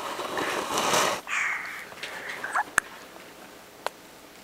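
A baby's breathy, snuffling breaths while she eats, followed by two small sharp clicks in the second half.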